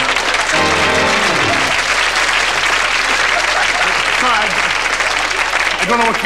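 Studio audience laughing and applauding, loud and sustained, over the end of a sung hymn tune with musical accompaniment that dies away about a second and a half in.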